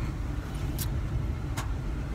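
Steady low rumble of a car heard from inside the cabin, with two faint ticks about a second apart.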